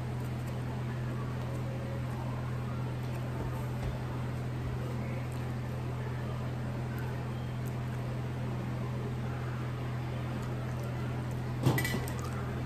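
Steady low hum over faint even room noise, with one short click or knock near the end.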